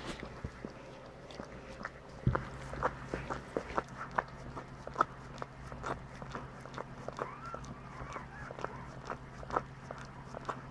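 A standard poodle licking her newborn puppy clean: irregular wet licking and smacking clicks, several a second.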